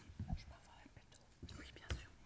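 Faint breathing and small mouth noises from a speaker close to a microphone, with a short click near the end.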